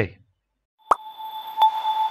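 Short transition sound effect for a section title card. A plop comes about a second in, then sustained bell-like chime tones over a soft hiss, with a second strike just before the end.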